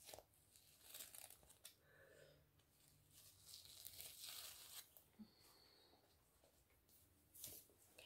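Faint rustling and tearing of a damp charcoal mud sheet mask being peeled off the face, in a few short spells in near silence.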